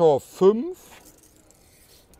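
A man's voice speaking German briefly at the start, followed by a faint rustle of handling noise and then a quiet room.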